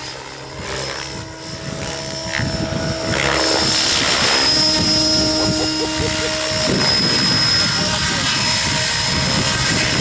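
Radio-controlled model helicopter running low over the grass, its rotor and motor giving a steady drone with a high whine. The sound gets louder about three seconds in and shifts in pitch a little before seven seconds, as the helicopter comes down onto the grass with its rotor still spinning.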